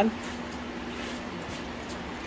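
Steady low room noise with a faint constant hum, broken only by a few faint soft ticks.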